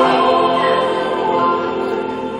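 Mixed choir holding a chord that slowly fades away.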